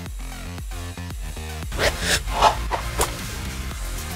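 Electronic background music with a steady beat, with a few whooshing sweeps about two seconds in, like a transition effect.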